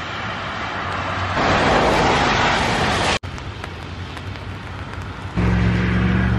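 Wet-weather outdoor noise, with a vehicle's tyres hissing on a wet road that swells in the middle and breaks off suddenly. A steady low hum comes in near the end.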